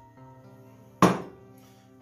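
A glass beer bottle set down on a hard worktop: one sharp knock about a second in that rings out briefly, over steady background music.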